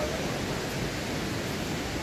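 Rushing river water: a steady, even hiss with no change.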